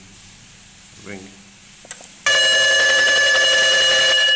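A school bell gong, rung manually from an automatic school bell controller, sounds a loud, steady tone with several overtones. It starts about halfway through, just after a short click from the button press.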